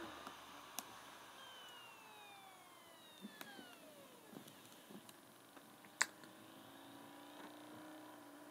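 Faint sounds of a MacBook restarting: a drive's whine sliding down in pitch as it spins down, with a few soft clicks, then a low steady hum coming in near the end as the machine starts back up.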